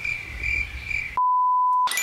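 A single edited-in censor-style bleep: one steady pure tone, about two-thirds of a second long, starting a little past the middle, with all other sound cut out while it plays. Before it there is only low room noise with a faint steady high whine.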